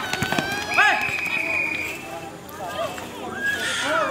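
People shouting and calling out during a pickup basketball game on an outdoor court. About a second in, one long high-pitched call is held for more than a second.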